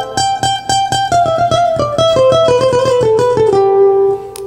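Acoustic guitar improvising a quick single-note lead line in A minor high on the neck, notes picked in rapid succession, settling on a held note near the end.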